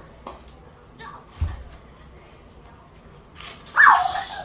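A few soft knocks and one low thud on the floor, then a child's short high-pitched cry near the end. No toy helicopter motor is heard.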